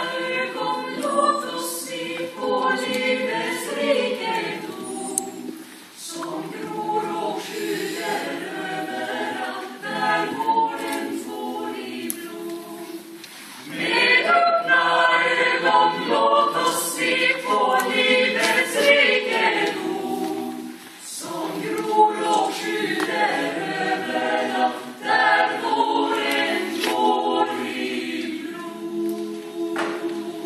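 Small mixed choir of four women and four men singing a cappella in several-part harmony, in phrases with brief breaks between them; the singing grows louder about a third of the way in.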